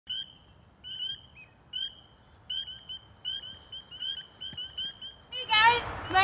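Northern spring peepers calling from a wetland: short, high-pitched, upward-slurred peeps repeated about one to three times a second, coming closer together toward the end.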